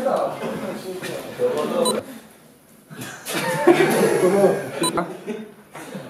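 People talking and a man laughing, with a short lull about two seconds in.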